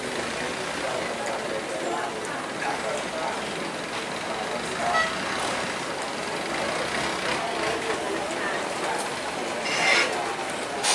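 Busy riverside ambience: a steady mix of indistinct voices and motor noise, with a short toot about halfway through and a louder burst of noise near the end.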